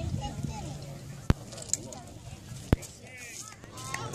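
Background chatter of spectators at a ball field, with two sharp knocks about a second and a half apart in the middle.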